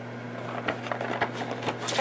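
A cardboard figure box being turned in the hand and set down upright on a tabletop: a few light taps and scrapes, the last and loudest near the end. A steady low hum runs underneath.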